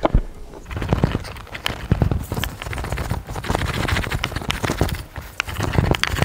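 Wooden rolling pin rolled over a dough sheet on a hexagonal pelmeni mould, pressing the dumplings through: a run of irregular knocks and clicks over a low rumble.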